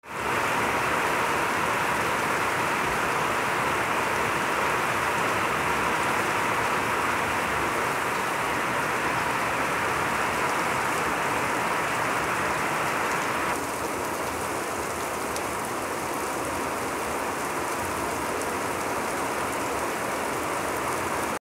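Heavy rain pouring down in a dense, steady hiss, a little quieter about two-thirds of the way through.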